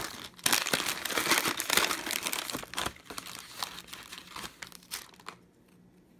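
Plastic Oreo package crinkling as cookies are pulled out of it. It is densest and loudest in the first half, then thins to scattered crinkles and clicks before dying away near the end.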